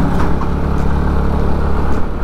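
Motor scooter's engine running steadily while being ridden, under a steady low rumble.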